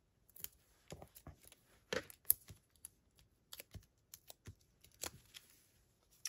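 Paper cardstock strips being handled on a tabletop: quiet, irregular light taps and rustles, a couple of dozen in all.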